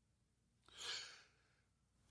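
Near silence broken by one short, faint breath from the narrator about a second in.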